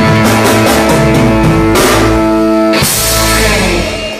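Live blues-rock trio of electric guitar, bass and drums: the guitar holds sustained notes over the band, with cymbal crashes about two and three seconds in, as the song rings out to its final chord. The music drops away right at the end.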